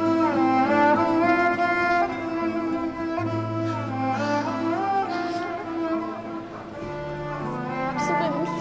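Background drama score of bowed strings, cello and violin, playing slow held notes that slide between pitches over low sustained bass notes.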